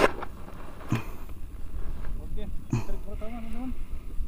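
Steady low rumble of wind and open water on the microphone, broken by a few sharp knocks near the start, about a second in and near the three-second mark. A short faint voice follows near the end.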